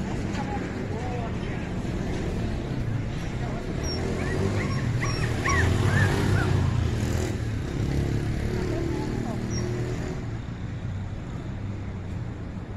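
Small dog whining in a few short, high, rising-and-falling whimpers around the middle, over a low rumble.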